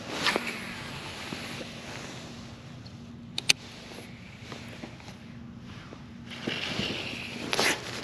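An angler handling a fishing rod and reel while casting and retrieving: clothing rustling against the chest-mounted camera, with two sharp clicks close together about three and a half seconds in, over a faint steady hum.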